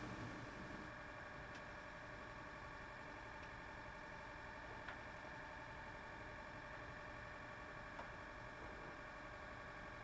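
Quiet room tone: a faint steady hum, with a few faint single ticks spread apart.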